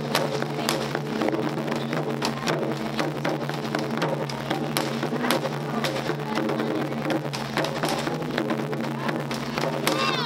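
Taiko ensemble: several large barrel-shaped taiko drums struck with wooden bachi sticks in a dense, driving pattern of strokes, over a steady low drone.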